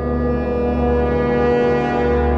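A held, low brass-like horn note, steady in pitch and slowly swelling in loudness, laid over the edit as a sound effect.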